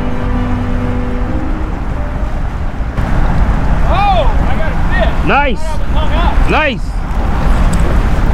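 A man's voice gives three short rising-and-falling exclamations about halfway through and later, over a steady low rumble. A held music chord fades out in the first couple of seconds.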